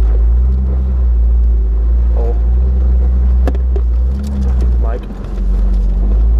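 Jeep Wrangler driving a dirt trail, heard from inside its open-sided cabin as a loud, steady low rumble of engine and road, easing briefly about five seconds in.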